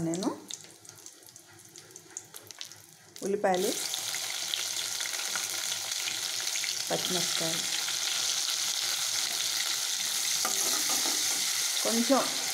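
Tempering in hot oil in an aluminium kadai: faint crackling from dried red chillies frying, then a loud, steady sizzle starts suddenly about three and a half seconds in as curry leaves go into the oil and keeps going as green chillies are added and stirred.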